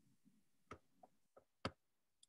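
Near silence broken by four faint, sharp clicks roughly a third of a second apart, starting a little before halfway; the last, near the end, is the loudest.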